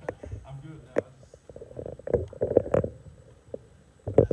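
Indistinct, muffled speech broken by a few sharp knocks, one about a second in and a louder one near three seconds in.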